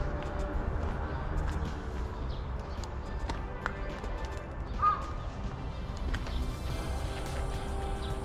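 Soft background music over a steady low rumble of wind and movement on the microphone, with a few light clicks and one short high chirp about five seconds in.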